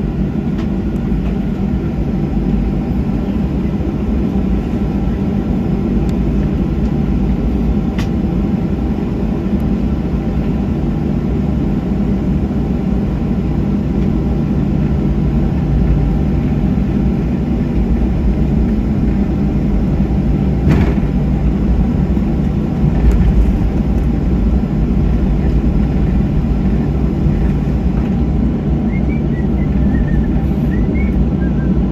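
Steady low rumble in the cabin of a Boeing 737-700 taxiing, from its CFM56-7B engines at taxi power and the wheels rolling along the taxiway, with a couple of brief faint knocks.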